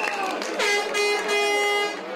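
A horn sounds one loud held note, a little over a second long, over crowd chatter.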